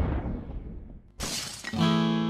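Logo sound effect: a big swoosh-and-boom dying away, then about a second in a brief, sudden crash, and near the end an acoustic guitar strums its first chord as the song begins.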